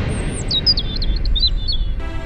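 A bird chirping: a quick run of high, stepped chirps over a low rumble.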